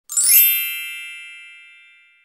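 Sparkly chime sound effect: a quick glittering shimmer of high bell tones that settles into one ringing chord and slowly fades away.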